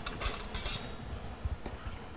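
A metal slotted spoon clinking and scraping against a stainless steel pan as pickling liquid is stirred to dissolve the sugar. The clinks are busiest in the first second, then a few lighter ticks follow.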